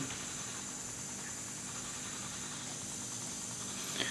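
Steady, faint hiss of background noise with no other clear sound.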